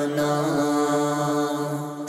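A man singing an Urdu devotional kalam (naat), holding one long, slightly wavering note, with no instruments heard.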